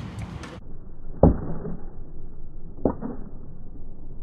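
Slowed-down skateboard sound: a pitched-down rumble of rolling wheels on concrete with two deep, drawn-out thuds of the board striking the ground about a second and a half apart, the first the louder.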